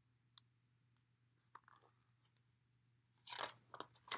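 Near silence, with a couple of faint clicks, then near the end the short rustle and clicks of a picture book's paper page being turned.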